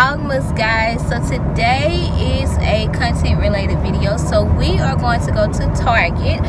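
A steady low rumble of a car running, heard inside the cabin under a woman talking.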